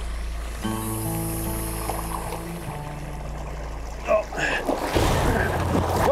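Background music of sustained chords over a low drone. From about four and a half seconds in, water splashes and churns loudly as an alligator is grabbed by the tail in a shallow pool.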